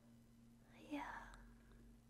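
A single soft whispered "yeah" from a woman about a second in. The rest is near silence with a faint steady low hum.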